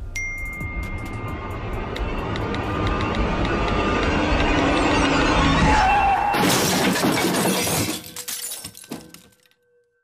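Car crash: a long run of crunching impacts that builds over about six seconds, then glass shattering. It dies away by about nine seconds, leaving a faint steady ringing tone.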